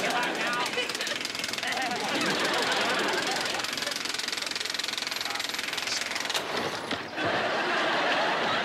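Electric drill clamped in a bench vise, running at speed with a fast, continuous rattle as it spins the wires it is twisting. The rattle cuts off about seven seconds in.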